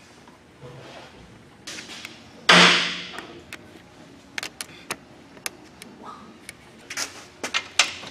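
One loud bang about two and a half seconds in that dies away over about a second, followed by a run of short, sharp clicks and taps.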